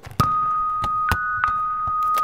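A steady high electronic tone with sharp clicks and knocks over it, and a second, slightly higher tone cutting in briefly about a second in: sound design opening a promo soundtrack.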